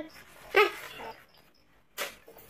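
A short, dog-like whimper, loudest about half a second in and fading within half a second, with a sharp click at the very end.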